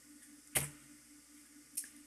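Near silence with a faint steady hum, broken by one short click about half a second in.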